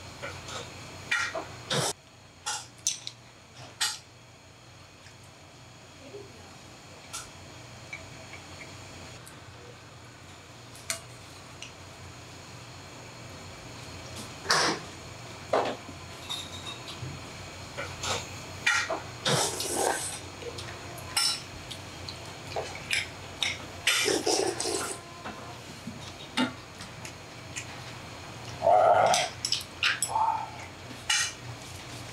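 Stainless steel chopsticks clicking and scraping against stainless steel noodle bowls and dishes while cold noodles are eaten, with scattered light clinks and a few brief louder eating sounds, the loudest near the end.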